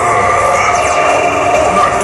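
Loud live band music from the stage, dense and steady, with drums and percussion in the mix.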